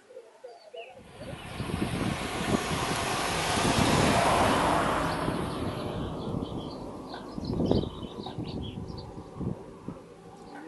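A bunch of road racing bicycles passing close by: a rush of tyres and air that swells to a peak about four seconds in and fades away.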